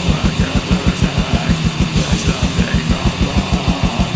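Black/death metal: distorted electric guitars over rapid, evenly spaced bass-drum beats.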